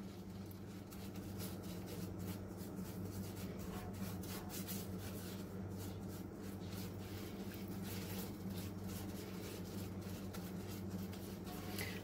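Silicone spatula stirring and scraping butter and cinnamon sugar around a cast iron skillet, a run of soft, quick scraping strokes over a low steady hum, as the sugar begins to melt into the butter.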